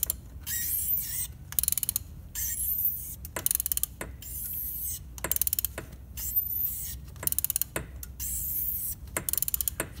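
Ratchet wrench ratcheting in about eight short bursts of rapid clicking, with softer scraping between them, as a glow plug is worked out of a Toyota 1KZ-TE diesel's cylinder head.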